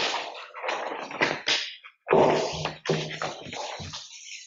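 Sheets of paper rustling and being leafed through at a table, in irregular scratchy bursts, loudest about two seconds in.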